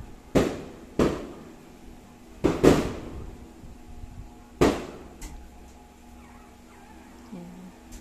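Fireworks and firecrackers going off at a distance: about five sharp bangs in the first five seconds, two of them close together midway, each trailing off briefly.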